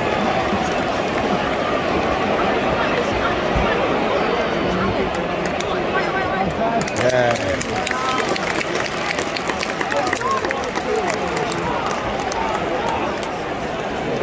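Football stadium crowd: a dense, steady noise of many voices talking and calling out, with single shouts standing out now and then and a few scattered claps.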